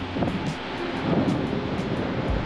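Evaporative air cooler's fan running, a loud steady rush of air.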